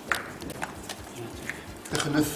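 Folded paper raffle slips being opened and handled on a table: a few short, sharp crinkles and light taps.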